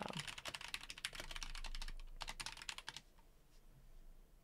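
Typing on a computer keyboard, a quick run of keystrokes that stops about three seconds in.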